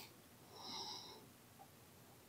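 Near silence, with one faint breath through the nose lasting about half a second, starting about half a second in.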